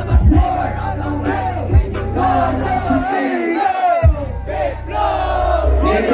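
Loud live band music with heavy bass and drums under the vocals, and a crowd shouting and singing along. The bass cuts out for about a second partway through.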